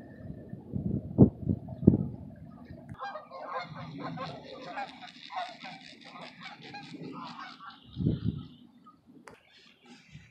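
A flock of geese honking in flight, many calls overlapping for about four and a half seconds starting about three seconds in. Low rumbles and a few knocks come before the calls, and another rumble follows near the end.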